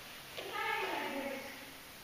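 A person's voice: one drawn-out vocal sound lasting about a second, sliding up and then down in pitch.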